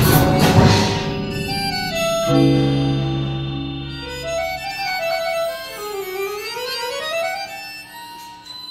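Indoor percussion ensemble playing on marimbas, vibraphones and cymbals. A loud accented hit with a cymbal wash comes in the first second, then held chords over a low bass, then a slow sustained melodic line that dips and rises again.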